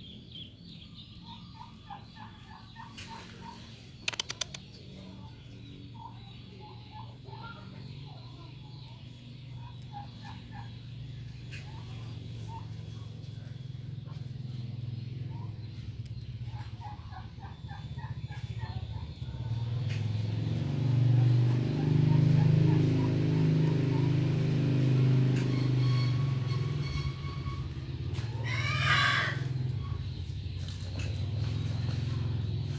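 A domestic tom turkey, strutting with its tail fanned, gives one loud gobble near the end. Earlier, soft chirping calls come in small clusters, and a low rumble swells through the second half.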